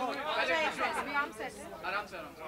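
Chatter of several people talking over one another, a crowd of voices with no single speaker standing out.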